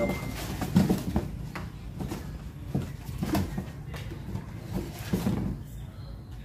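Cardboard speaker boxes and a loudspeaker cabinet being handled: box flaps folded shut and the cabinet shifted, giving scattered knocks and thumps, the loudest about a second in.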